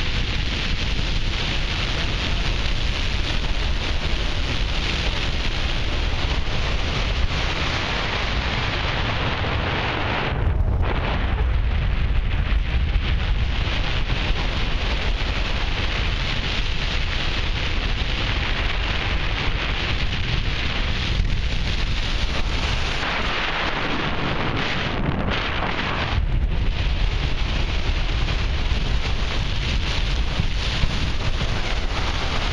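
Wind rushing over a glider-mounted camera's microphone in hang-glider flight: a loud, steady rush. It briefly drops off about ten seconds in and twice more around twenty-five seconds.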